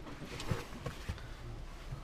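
Quiet car cabin with a few faint soft knocks and rustles of handling, about half a second and a second in.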